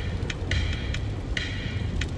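Road and engine noise inside a moving car's cabin, a steady low rumble, with faint high tones of background music that break off and resume a few times.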